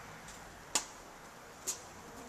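Two sharp footsteps on hard paving, about a second apart, over a faint steady hiss.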